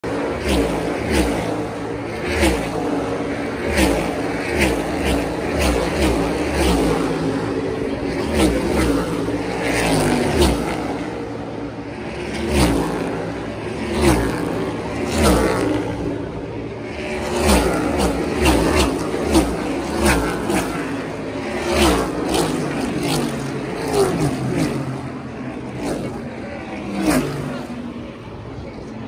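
NASCAR Cup Series stock cars' V8 engines passing at racing speed one after another, each a loud engine note that drops in pitch as the car goes by. They come about one every second or so, with a couple of brief gaps in the string of cars.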